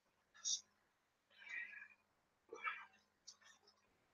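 Faint whispered speech in a few short bursts.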